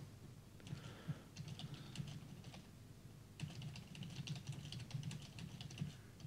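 Faint typing on a computer keyboard: two runs of quick keystrokes with a short pause between them.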